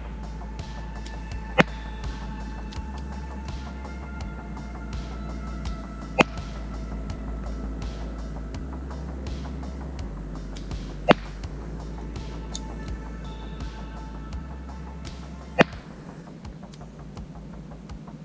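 Four shots from an SFC VSR10 spring-powered bolt-action airsoft rifle, each a single sharp crack, about four to five seconds apart, over background music with a steady bass line.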